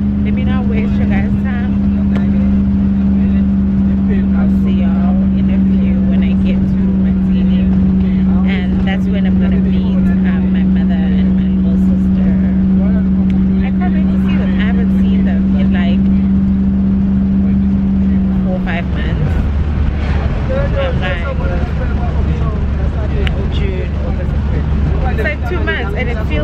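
Coach bus engine and road noise heard inside the cabin: a steady drone with a low rumble beneath. About three-quarters of the way through the steady hum breaks off, leaving the rumble.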